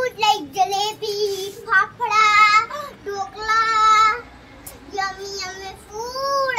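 A young girl singing a short song in a high voice, in several phrases with two long held, wavering notes.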